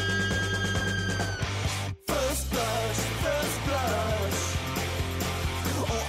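Rock band music: a held, ringing chord dies away, the track drops out for an instant about two seconds in, then the full band comes back in with a sliding guitar riff over bass and drums.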